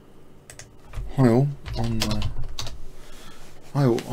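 Computer keyboard keys clicking a few times, with a man's voice speaking briefly in the middle, words unclear.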